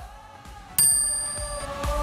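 A bright bell-like ding comes in suddenly about three-quarters of a second in and rings out for about a second: a subscribe-button chime sound effect, over quiet background music.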